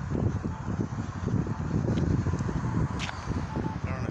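Wind buffeting and handling rumble on a handheld phone microphone carried while walking, a ragged low rumble with a few faint clicks.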